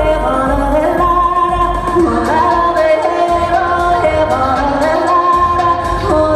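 Female singer performing live into a microphone over amplified pop backing music, holding long, sliding vocal notes. A steady ticking percussion beat comes in about two seconds in.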